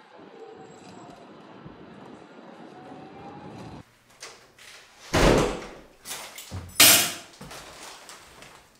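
Faint steady street background, then, after a sudden cut, two loud thuds of a door, about five and seven seconds in, each lasting about half a second.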